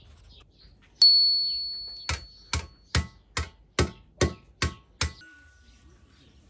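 Steel hammer striking a scythe blade's edge on a wooden table, peening the edge thin. One ringing blow about a second in, its ring fading over about two seconds, is followed by eight even taps, about two and a half a second.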